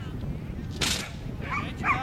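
Kelpie barking in short, excited yips while running an agility course, with a quick pair of yips near the end. A short, sharp noisy sound comes a little under a second in.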